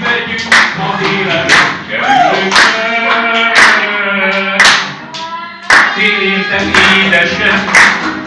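A woman singing a Hungarian song while an audience claps along in time, the claps coming in a steady beat under the voice.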